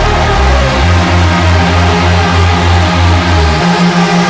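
Dark electronic music in the hardwave/wave/phonk vein, driven by a loud, pulsing bass line. The deepest bass drops out briefly near the end.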